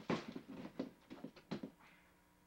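Irregular rustling and knocking of objects being handled: a quick run of short, uneven noises that stops near the end.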